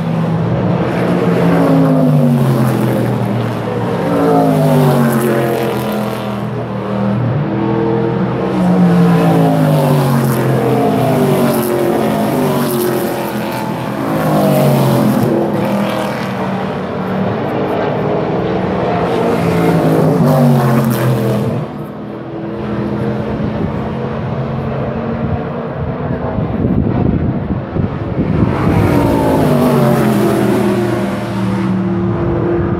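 Race car engines at high revs passing on the circuit, one car after another, their notes sliding up and down in pitch through gear changes as they go by. The sound is loud throughout.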